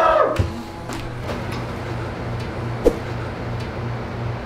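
Quiet background music over a steady low hum, with a few soft knocks and one sharp tap about three seconds in.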